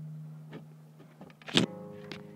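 The last acoustic guitar note rings and fades, then there are a few small handling clicks and a sharp knock about a second and a half in, after which several guitar strings ring on together.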